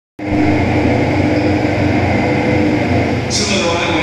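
TV broadcast of a cricket match playing through home-theatre surround speakers: steady stadium crowd noise with commentators' voices. The crowd noise brightens about three and a half seconds in.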